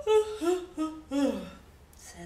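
A woman's voice humming a few short wordless notes, the last one sliding down in pitch, voicing a sleepy bear's yawn.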